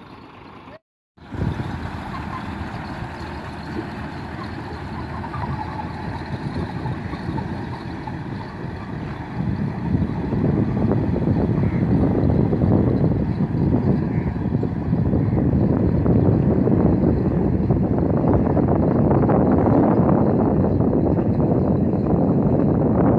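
Heavy diesel tipper truck engine running as the truck pulls away after dumping its load, a rough steady noise that grows louder about ten seconds in. A brief break to silence comes about a second in.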